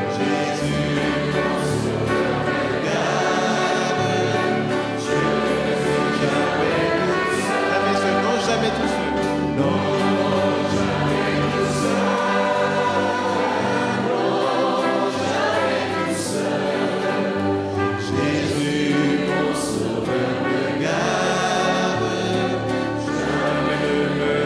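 Congregational hymn singing: many voices with a man singing into a microphone, accompanied by three violins, a flute and a trumpet, playing steadily.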